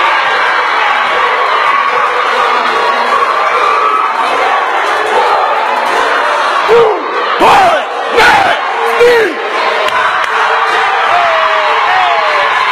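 Crowd cheering and shouting steadily, with a few loud individual yells and whoops about seven to nine seconds in.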